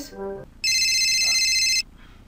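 A mobile phone ringing: a loud, high electronic ringtone that sounds for about a second and then cuts off suddenly.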